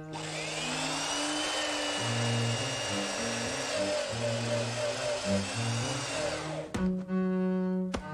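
Handheld electric drill running. It spins up with a rising whine about a quarter second in, runs steadily for over six seconds, and cuts off abruptly near the end with a click. A low cello and double-bass music score plays underneath.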